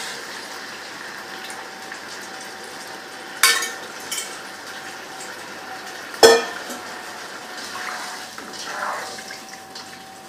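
A cooking pot of chicken stock heating on the stove with a low steady hiss. Two sharp metal clinks of a spoon against the pot come about three and a half and six seconds in.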